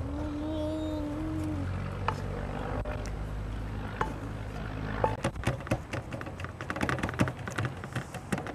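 Wooden spoon knocking and scraping against an aluminium pot and a steel platter as thick besan laddu mixture is scooped out and then spread flat. The knocks are single at first, then from about five seconds in come as quick taps, several a second. Near the start a brief pitched call lasts about a second and a half over a steady low rumble.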